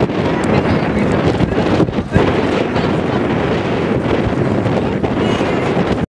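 Wind buffeting the camcorder's microphone, a loud steady rumble, with a brief lull about two seconds in.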